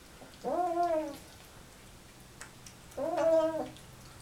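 Siamese cat meowing twice while eating, with its mouth full: a call that rises then falls about half a second in, and a second call about three seconds in, with faint clicks between.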